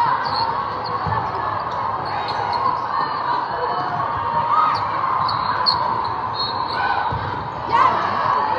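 Echoing hall ambience of many volleyball games: a steady wash of crowd chatter and voices, with a few dull thuds of volleyballs being hit and bouncing on the court.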